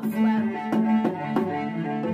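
Cello bowed across strings, its notes breaking off with small clicks and gaps several times rather than joining smoothly: the uneven string crossing that comes from lifting the left-hand fingers up and down instead of holding them down.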